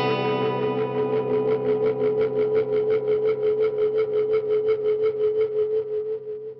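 Electric guitar played through a Catalinbread Adineko oil can delay pedal: a chord left ringing, its sound broken into rapid, even pulses of repeats, about eight a second.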